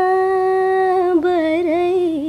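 A woman singing unaccompanied, holding one long steady note for about a second, then ornamenting it with small quick wavers in pitch.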